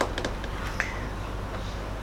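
A few short, sharp clicks, three close together near the start and one more a little under a second in, over a steady low hum.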